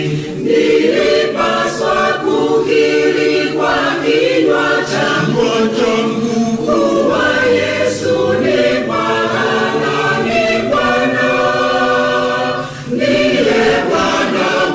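Large mixed church choir of women's and men's voices singing a Swahili hymn in harmony, in long held phrases, with a brief break between phrases near the end.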